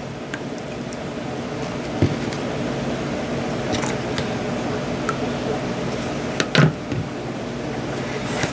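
A steady machine hum runs throughout, getting slightly louder, with light handling knocks from a plastic deli cup and a turkey baster: one about two seconds in and a sharper one near six and a half seconds.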